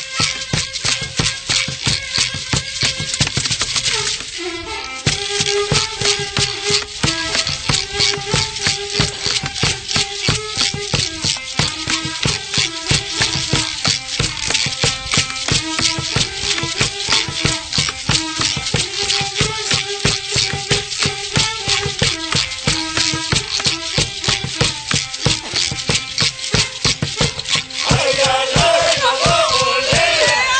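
Traditional Toba music: gourd and goat-hoof rattles shaken in a steady quick rhythm under a wavering melody from a one-string nvique fiddle, with a short break about four seconds in. Near the end, voices join in a loud chanted song.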